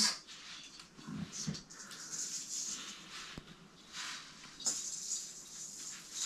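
Soft, intermittent rustling of artificial Christmas tree branches and baubles being handled and hung, with a couple of brief faint low sounds about a second in.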